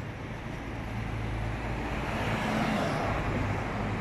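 Street traffic, with a car passing close by. Its engine and tyre noise swells to a peak about two and a half seconds in, then fades.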